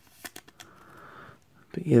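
A Pokémon trading card being slid into a clear plastic sleeve: a few light clicks of handling, then a soft steady plastic rustle lasting about a second.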